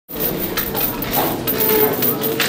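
Small pieces of metal jingling and clinking in quick irregular clicks, with footsteps on a hard stone floor.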